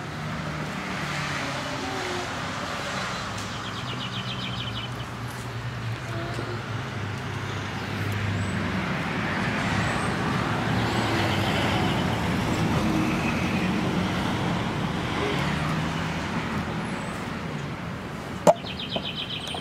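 Motor vehicle traffic on the street, a steady engine hum and tyre noise that grows louder toward the middle and then eases off, with brief bird trills.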